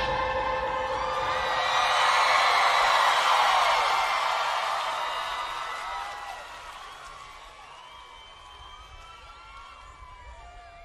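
Large concert crowd cheering and whooping after a song ends, swelling over the first few seconds and then fading, with scattered individual whoops and shouts near the end.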